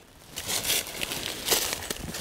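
Footsteps crunching through dry fallen leaves, an irregular run of crackling steps starting about half a second in.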